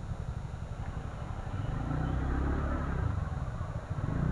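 TVS NTorq 125 scooter's single-cylinder engine running as it rolls slowly through stop-and-go traffic. It is a steady low rumble that gets slightly louder in the middle.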